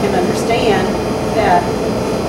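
A woman talking, over a steady background noise.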